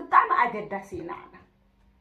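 A woman's voice speaking a short phrase, which breaks off about one and a half seconds in, followed by a brief pause.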